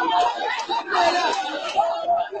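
Speech only: people talking, with voices overlapping in chatter.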